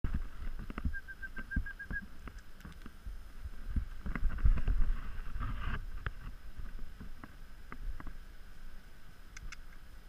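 Low rumble close to the microphone with many scattered clicks and knocks, and a quick run of about eight short high chirps about a second in.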